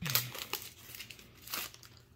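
Foil trading-card booster pack being torn open and its wrapper crinkled, in a few sharp crackles, the loudest right at the start.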